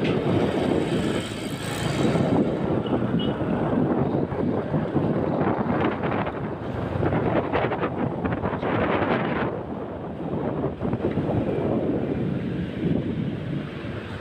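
Riding noise from a moving motorcycle: wind rushing and buffeting over the microphone, mixed with engine and road noise. It swells and eases unevenly throughout.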